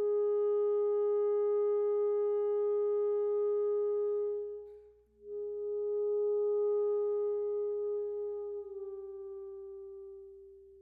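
Alto saxophone holding long sustained notes: one note for about four and a half seconds, a short break for breath, then a second long note that steps slightly lower near the end and begins to fade away.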